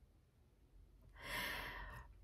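After about a second of near silence, a woman takes one audible breath lasting under a second, just before she speaks.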